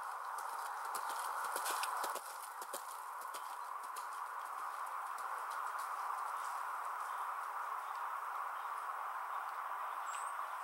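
Hoofbeats of a horse cantering on a dirt track, dense at first and fading over the first few seconds as it moves away, over a steady background hiss.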